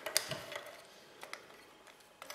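A few light metallic clicks as a wing nut is turned and loosened on a metal aerial mounting bracket. The loudest come just after the start, with fainter ones a little past one second and near the end.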